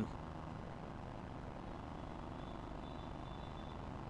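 Faint steady low background rumble of outdoor ambient noise, with a faint thin high tone in the second half.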